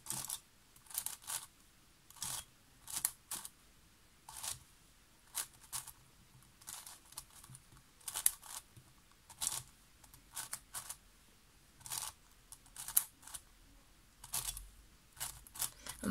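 Layers of a 7x7 plastic puzzle cube being turned by hand through a parity algorithm of wide-layer and U2 turns: some twenty short clicking swishes, one or two a second, with small gaps between moves.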